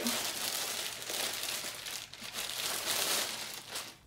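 Clear plastic bag crinkling steadily as it is handled and pulled off a boxed mirror, with a short lull about halfway through.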